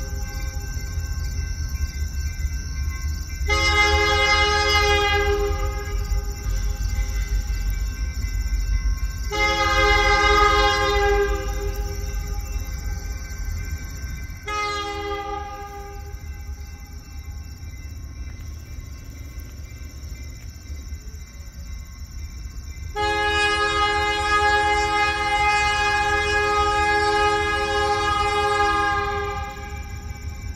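Diesel locomotive horn sounding the grade-crossing pattern as four chords of several tones: two long blasts a few seconds apart, a short one, then a final blast held about six seconds, over the steady low rumble of the passing freight train.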